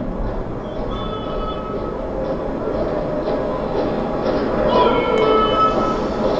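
TV broadcast sound of a live military flag-raising ceremony, played through the Xiaomi laser projector's speaker. It is steady background noise with music, with brief held tones about a second in and again near the end.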